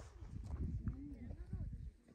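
Faint, indistinct talking of hikers walking nearby, over a low rumble, with the voices dying away near the end.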